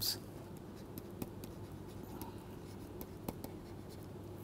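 Pen-stylus writing on a tablet: faint scratching with a scattered handful of sharp ticks as words are handwritten, over a low steady hum.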